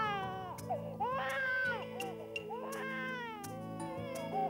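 A baby crying in a few drawn-out wails that rise and fall in pitch, over soft background music with sustained low notes.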